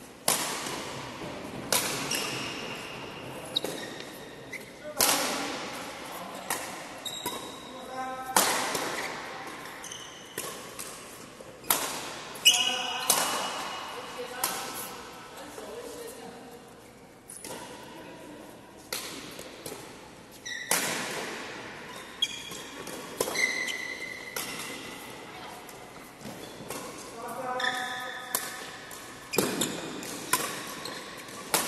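Badminton rackets striking a shuttlecock in rallies: sharp cracks every second or two, ringing on in the echo of a large hall.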